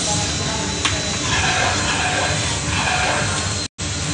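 Steady hissing rush of air drawn through the vacuum suction hose of an arcade suction game, with one sharp click about a second in. The sound cuts out for a moment near the end.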